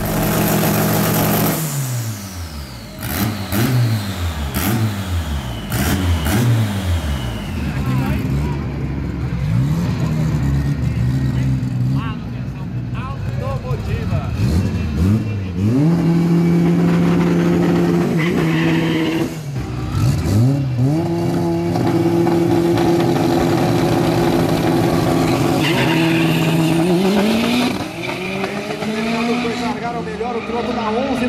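Turbocharged Volkswagen Santana drag car's engine revved in a string of quick blips, then held at a steady high pitch twice while staging, before climbing sharply as the cars launch near the end.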